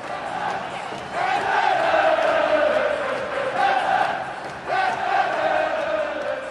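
Crowd chanting in long drawn-out notes that slide slowly down in pitch, a new call starting about a second in and another near the end.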